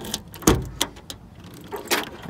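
Key turning in the trunk lock of a 1990 Cadillac Sedan Deville and the trunk latch releasing with one sharp clunk about half a second in, followed by a few lighter clicks as the lid comes up.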